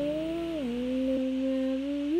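A woman's voice holding one long wordless sung note that slides down in pitch about half a second in, then holds steady.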